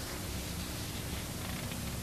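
Steady low hum with a hiss, even throughout, with no distinct sounds: background noise of an old recording.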